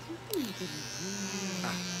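Small cordless electric pet clipper switched on with a click about a third of a second in, then running with a steady high-pitched buzz as it trims the fur between a cat's paw pads.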